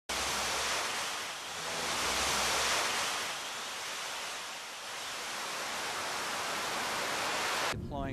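New Shepard rocket's BE-3 engine firing at liftoff: a steady rushing noise with some low rumble in the first few seconds. It cuts off suddenly near the end.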